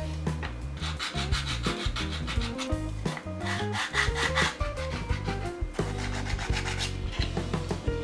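A 3D-printed plastic part is rubbed back and forth on sandpaper in quick, even strokes to grind down its width. There are three runs of scraping: one starting about a second in, one around the middle and one near the end.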